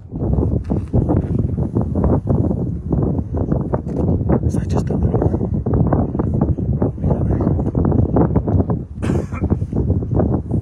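Kilauea lava fountain erupting: a loud, continuous low rumble broken by irregular crackles and pops.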